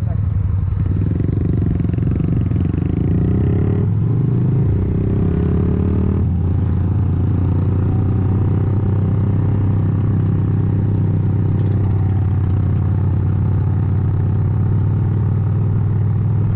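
Yamaha Virago 250's air-cooled V-twin engine running under way, its note shifting a few times in the first six seconds and then holding steady.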